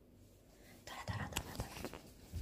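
A small dog scratching and nosing at a quilted fabric mat: fabric rustling with soft paw thumps and a few clicks, starting about a second in.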